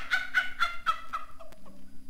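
A performer's voice in a rapid run of short, repeated, slightly falling syllables, about four a second, dying away after about a second: a cackling, gobble-like vocal burst.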